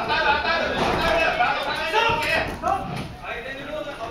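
Loud shouting voices in a large hall, calling out through most of the stretch and easing off near the end.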